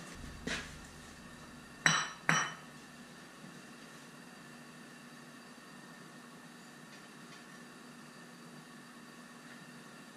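Two sharp, ringing metal clinks about two seconds in, half a second apart: a steel ladle knocking against the lead-melting pot. After them comes the faint, steady hiss of the propane burner flame under the pot.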